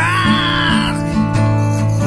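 Live acoustic band music: acoustic guitars and an acoustic bass guitar playing, with a sung voice sliding up into a high held note for about the first second.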